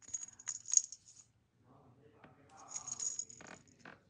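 Small metal jingle bell on a keychain tinkling as the keychain is handled, with the metal keyring and jump rings clinking. Two spells: a bright jingle with a few clicks in the first second, then a softer jingle with rustling about three seconds in.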